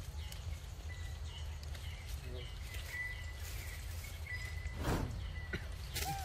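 Outdoor ambience: a steady low rumble with faint, thin, repeated bird chirps, and one short sharp sound just before the end.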